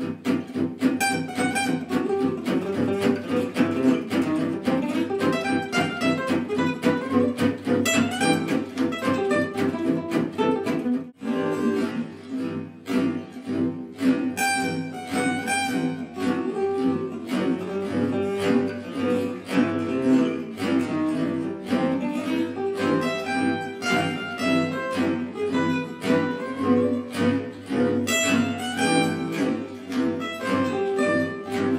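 Gypsy jazz acoustic guitars playing: a lead guitar picks a single-note solo built on C major triad (1-3-5) licks over rhythm-guitar chord accompaniment. A brief drop comes about eleven seconds in, and the later part is a slowed-down replay of the same solo.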